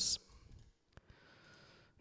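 The end of a spoken word, then near silence broken by a single faint click about halfway through.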